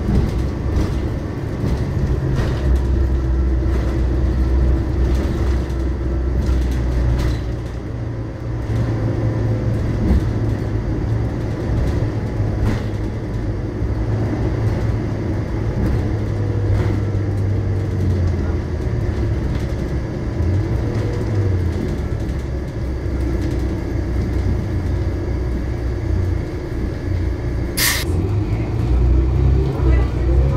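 Interior of a Volvo B12BLE city bus under way: its diesel engine runs steadily, its pitch stepping up and down with the gear changes and the stop-start traffic, over a faint steady whine. One short sharp hiss near the end.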